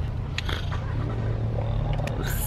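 Low steady hum inside a stationary car's cabin, with a faint click about half a second in.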